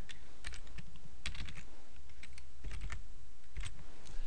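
Computer keyboard keystrokes in short, irregular runs, typing in a six-character hex colour code, over a faint low hum.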